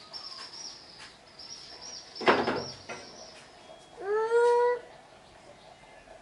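High, wavering chirping runs in the background. A loud rough noise comes about two seconds in, and a short pitched call rises and then holds near the four-second mark.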